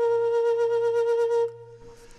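A flute holding one long, steady note that ends suddenly about one and a half seconds in.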